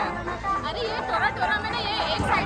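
Voices talking over the chatter of a crowd.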